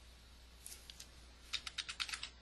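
Computer keyboard keys being tapped: a couple of light keystrokes, then a quick run of taps near the end.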